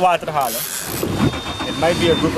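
A fishing reel's drag running as a hooked fish takes line: a high, steady mechanical whir with a thin whine over it for about a second near the end.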